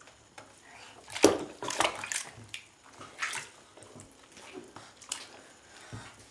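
Bath water splashing and sloshing as a toddler moves in the tub. There are several short splashes, the sharpest about a second in.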